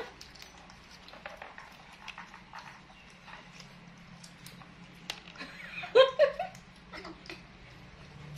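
Small scattered clicks and ticks of baby macaques handling and biting into longan fruit, then a brief high-pitched squeal with a couple of short calls from a young macaque about six seconds in.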